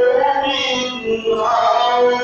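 A voice chanting a devotional Mawlid song (qasida) in Arabic, drawn out in long held notes with a wavering melody.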